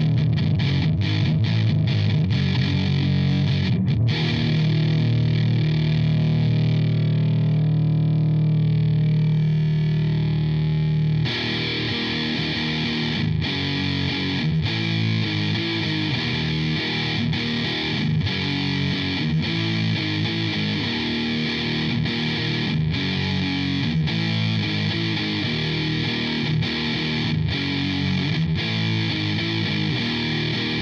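Distorted electric guitar played through a DigiTech DF-7 Distortion Factory pedal: fast repeated chord strokes for the first few seconds, then a held chord ringing out and thinning. After about eleven seconds a brighter, more trebly distorted riff starts and runs on.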